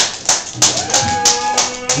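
A steady rhythmic ticking, about five sharp ticks a second, like a percussion beat kept going under the stage talk. A held instrument note sounds over it from about a third of the way in until shortly before the end.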